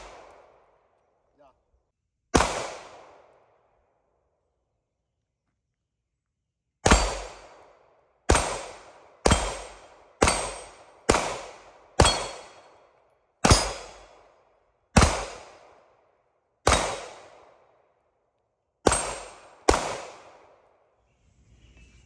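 Pistol shots fired one at a time, about thirteen in all: a single shot early on, a pause, then a steady string of shots roughly a second apart. Each crack is followed by a short echo that fades out.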